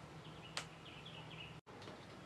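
Faint bird chirping in the background, a quick run of short high notes, with one sharp click about half a second in over a steady low hum.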